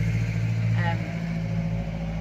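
A motor vehicle's engine running, a steady low hum that fades about a second in.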